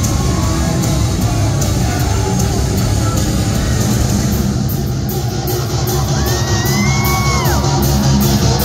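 Heavy rock band playing live and loud through a concert PA, the bass and drums filling the low end under a steady pulse of cymbals. Near the end a high sliding tone rises and falls.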